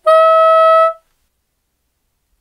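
Bb soprano saxophone playing one held note, the upper F-sharp fingered with the octave key, for just under a second before stopping cleanly.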